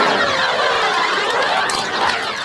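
A loud, warbling, siren-like electronic sound effect with sweeping pitches, starting abruptly and lasting about two seconds, played as a jingle on a pirate radio show.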